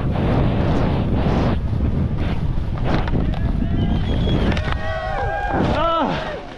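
Heavy wind buffeting on a helmet-mounted camera's microphone over the hiss of skis sliding on snow. From about halfway, spectators' shouts and cheers rise over it as the skier reaches the finish.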